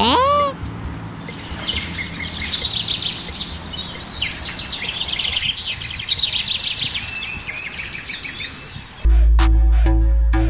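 Birds chirping and trilling in rapid, high twitters: a cartoon bird sound effect. Music with a heavy bass starts abruptly near the end.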